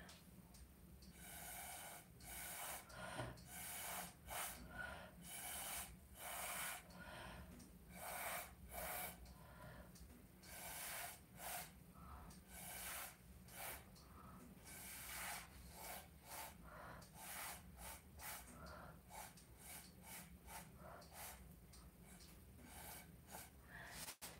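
Short, soft puffs of breath blown through a drinking straw onto wet acrylic pouring paint, about one to two a second with small pauses, pushing the paint outward to open up lacing.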